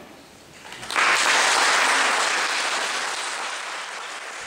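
Applause breaking out about a second in, after a violin duet ends, then slowly dying down.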